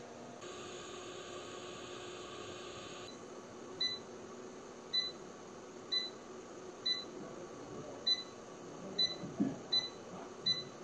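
Touch-control panel of an LED light therapy (PDT) facial machine beeping with each button press as the light colour is switched: short electronic beeps about once a second, coming quicker near the end. A steady hiss fills the first three seconds.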